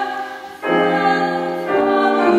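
A female opera singer singing with grand piano accompaniment: a held note fades, there is a short break about half a second in, then she enters on a new sustained note and moves to another pitch near the end.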